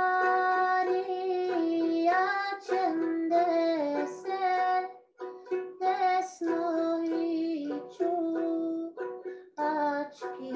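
A woman singing a slow melody of long held notes, accompanying herself on a small plucked string instrument. The song pauses briefly twice, about five and nine and a half seconds in.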